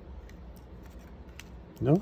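Baseball trading cards being handled and flipped through: a few faint, sharp clicks and slides of card stock over a low steady hum. A voice begins near the end.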